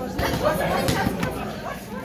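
Onlookers chattering in a boxing gym, with a few short sharp slaps of boxing gloves landing during sparring.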